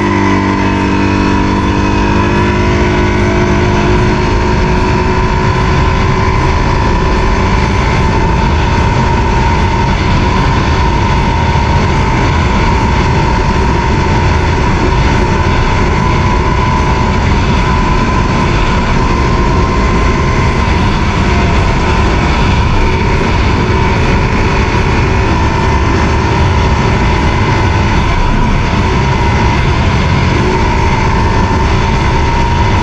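CFMoto ATV engine held at steady high speed on full throttle, a continuous drone with a steady whine on top.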